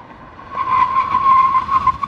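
Tesla Model 3's tyres squealing under a hard emergency stop from about 60 mph, a steady high squeal that starts about half a second in. The wheels are locking up rather than the ABS pulsing, which the hosts take as laying down rubber and the reason for the long stopping distance.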